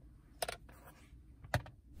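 Hard plastic storage case of the Ancel PB100 circuit probe being opened: two short plastic clicks about a second apart, with little else heard.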